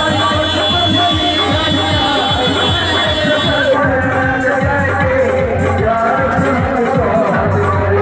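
Live wedding band music played loud through a PA: a man sings into a microphone over percussion and accompaniment, with crowd noise beneath.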